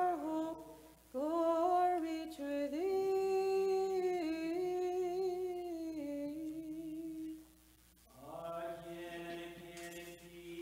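Unaccompanied Orthodox liturgical chant: one voice sings a slow melodic line of held, gliding notes over a steady low held note. The singing breaks off briefly about three-quarters of the way in, then resumes.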